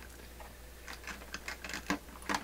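Small clicks and knocks of an amplifier board and its fittings being worked into place in a record player's wooden cabinet, a quick irregular run of taps starting about half a second in.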